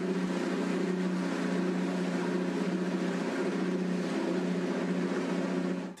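Motorboat engine running at a steady speed on a river: a constant low drone with water and wind rush over it, which stops suddenly just before the end.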